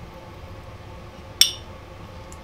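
A small ceramic trinket dish, handled while transfer tape is peeled off its vinyl lettering, clinks once about one and a half seconds in: a short, bright ringing chink.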